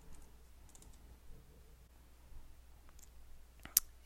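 Faint, sparse clicks of a computer keyboard and mouse, with one sharper click near the end.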